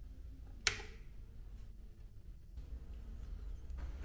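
A single sharp click a little over half a second in: the rocker power switch on the back of a Corsair RM850 power supply being flipped on.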